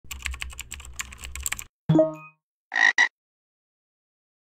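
Intro sound effects: rapid computer-keyboard typing for about a second and a half, then a short pitched note, then a frog croaking twice in quick succession.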